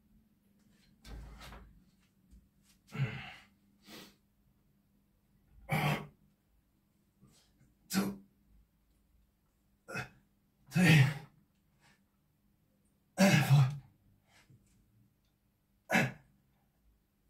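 A weightlifter's loud, forceful exhales and grunts, about every two to three seconds, as he strains through reps of a heavy barbell overhead press, under a faint steady hum.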